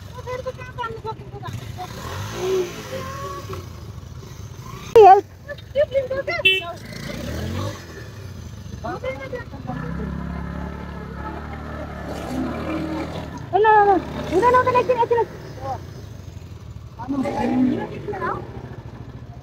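Motorcycle engine running under the voices of several people talking, its low hum swelling for a couple of seconds around the middle as the bike is worked at a rocky step on the trail.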